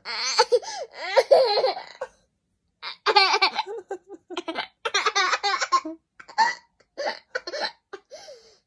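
A toddler and a man laughing together: several bouts of giggling broken by short pauses.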